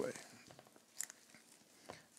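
Faint crinkling of plastic shrink wrap on a vinyl LP being picked at by fingers, with two small crackling clicks, about a second in and near the end.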